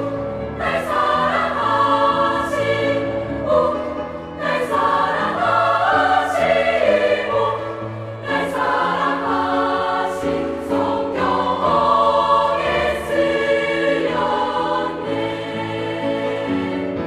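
A large girls' choir singing an upbeat gospel hymn medley in Korean, in phrases with brief breaths between them, over sustained low accompaniment notes.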